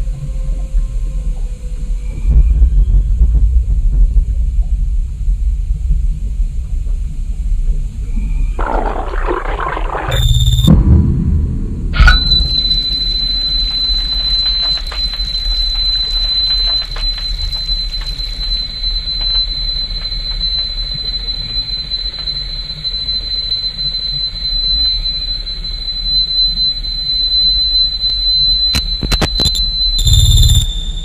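Eerie horror-film soundtrack of the cursed videotape sequence, with a low rumbling drone underneath. About nine seconds in comes a rush of scratchy noise, and about twelve seconds in a sharp hit, after which a thin, steady high-pitched whine holds.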